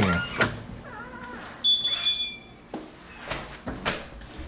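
A front door being opened and shut, with latch clicks and knocks. About one and a half seconds in comes a single short, high electronic beep of about half a second, the kind of door chime a home alarm panel gives when an entry door opens.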